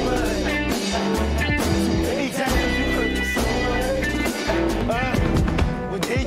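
A band playing the chorus of a song: singing over drums, bass and layered electric guitars, with a second guitar layer played over the top.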